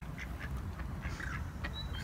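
Ducks on a pond giving a few faint quacks over a steady low rumble.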